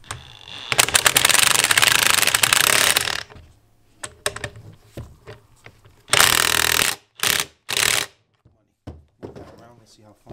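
Impact wrench hammering a 22 mm nut tight on a lower control arm's compliance bushing bolt. It runs in one long rapid rattle of about two and a half seconds, starting about a second in, then gives three short bursts near the end.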